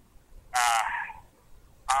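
Speech only: a man's drawn-out hesitant "uh" about half a second in, then the start of his answer near the end.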